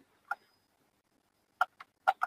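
Computer keyboard keys being tapped: one click about a third of a second in, then two quick clicks near the end.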